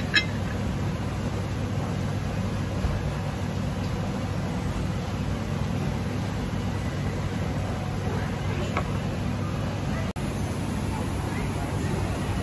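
Steady rumble of road traffic with faint background chatter, and a light clink right at the start as a small ceramic sauce dish is set down on the table. The sound cuts out for an instant near the end.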